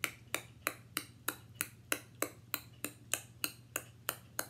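A woman clicking her tongue in a steady rhythm, about three sharp clicks a second.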